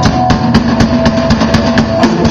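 Punk rock band playing loud and live: electric guitar and bass holding a sustained chord over a fast, steady drum beat.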